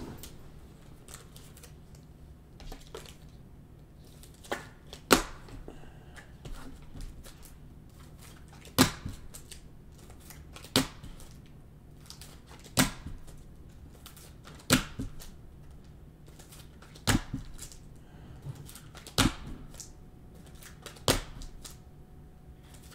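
A stack of glossy trading cards being flipped through by hand, one card at a time, with a short sharp snap of card on card about every two seconds.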